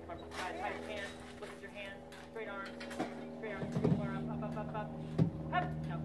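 Faint, indistinct voices of people talking, over a steady low hum, with a couple of light knocks about halfway through and near the end.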